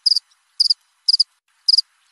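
Cricket chirping sound effect: four short, high-pitched double chirps about half a second apart, over dead silence. It is the comic 'awkward silence' cue.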